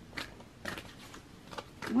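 A deck of tarot cards being shuffled by hand: several short, sharp card flicks and slaps spaced across the two seconds, with a woman's voice starting just at the end.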